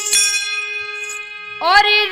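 Harmonium holding a steady note between sung lines, with a bright metallic ding just after the start that rings briefly. A woman's singing voice slides back in about a second and a half in.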